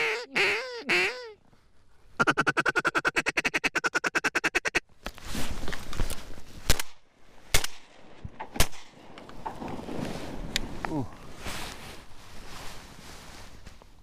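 Duck call blown by a hunter: a few descending quacks, then a fast, even chatter of a feed call lasting a couple of seconds. Then three loud shotgun shots about a second apart at ducks overhead, followed by rustling.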